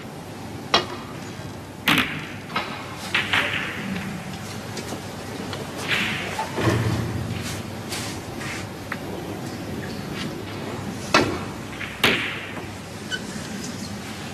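Snooker balls clicking on the table: the cue striking the cue ball, then the cue ball hitting into the pack of reds and scattering them. The loudest click comes about two seconds in, followed by a run of sharp clicks as balls knock against each other and the cushions.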